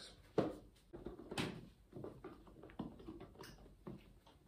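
Handling and opening an empty white cardboard box: a string of taps, clicks and scrapes of cardboard as the lid is worked off the base. The sharpest clicks come about half a second in and again about a second and a half in.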